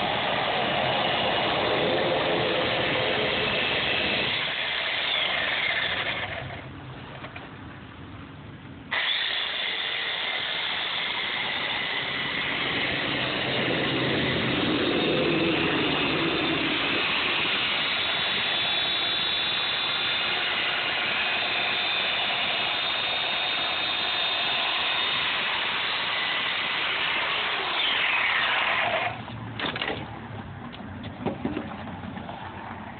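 Chainsaw running at full speed as it carves polystyrene foam. The sound drops away for a couple of seconds about six seconds in, then comes back up, and falls off again near the end.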